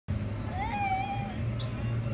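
Steady low hum of the inflatable ride's air blower and motor. A short high-pitched squeal rises and falls from about half a second in.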